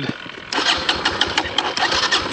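Kawasaki KLX140RF's electric starter cranking the single-cylinder engine, starting about half a second in, without the engine catching. The bike won't run, and the rider suspects water in the airbox from deep puddles.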